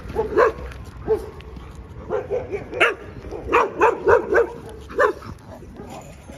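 A dog yapping in short, high barks, some single and some in quick runs of three or four.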